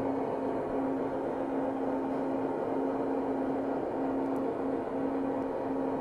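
A steady electronic drone from a keyboard rig: one held low tone with a noisy hiss around it, left sounding after the pulsing beat has cut off.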